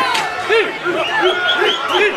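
Large crowd of spectators, many voices shouting and calling over one another at a loose bull in the street.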